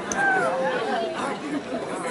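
Crowd chatter: several people talking over one another at once.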